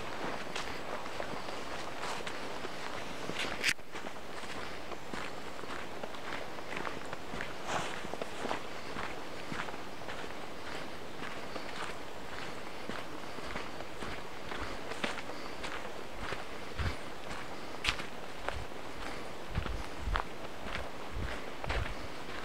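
Footsteps of a person walking at a steady pace on a damp, leaf-covered dirt forest track, about two steps a second. A sharper click stands out a few seconds in and again near the end, with a few low thumps in the last seconds.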